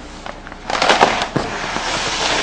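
Large sheets of flip-chart paper rustling and crackling as they are handled and pushed aside, with a few sharp knocks. It starts under a second in after a quiet moment.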